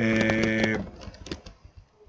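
A man's voice holding one drawn-out hesitation sound at a steady pitch for under a second, followed by scattered light clicks.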